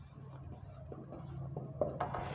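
Marker pen writing on a whiteboard: a few short, high-pitched scratchy strokes as figures are written, over a faint steady low hum.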